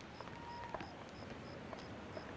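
Faint night ambience: a cricket chirping in short, evenly spaced high chirps, about three a second, over a low hiss.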